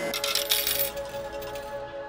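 Coins clattering out of a laundromat change machine into its tray in a dense rattling burst that dies away within about two seconds, over background music with long held notes.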